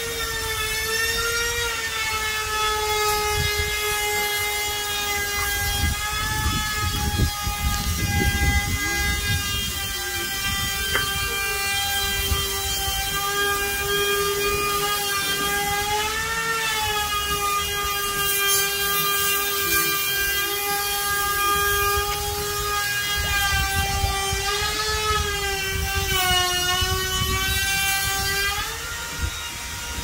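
Handheld trim router with a roundover bit, running at a steady high whine as it cuts a rounded edge along redwood trim boards. Its pitch sags briefly a few times as the bit takes load, and it cuts off just before the end.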